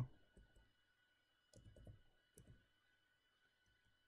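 A few faint computer keyboard keystrokes over near-silent room tone: a quick run about one and a half seconds in, then one more click shortly after.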